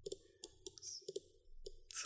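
Computer mouse button clicking, about five short sharp clicks spread over two seconds.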